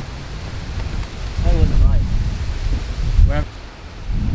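Wind buffeting the microphone in a low rumble that swells about a second and a half in and eases near the end, with two short vocal sounds over it.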